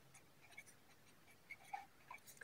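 Faint scratching and light ticks of a pen writing numbers on paper, with near silence between the strokes.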